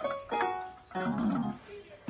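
Toy electronic keyboard sounding several held, overlapping notes as a horse's muzzle presses its keys, followed about a second in by a short, low, wavering sound.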